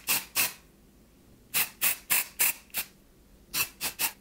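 Aerosol can of Girlz Only Dazzling Volume dry shampoo sprayed in short hissing puffs into the hair roots: two at the start, a run of five about a third of a second apart in the middle, and two more near the end.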